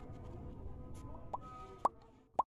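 Quick rising pop sound effects of a like-and-subscribe animation: a small one about a second and a third in, then a louder one near the end. Under them is a steady low background with a faint held tone.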